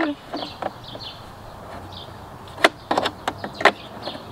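Hard plastic clicks and knocks as a plastic safety key is pushed into its slot in an electric mower's plastic battery compartment: a few faint ticks early, then five or so sharp clicks in quick succession from about two and a half seconds in, the first the loudest.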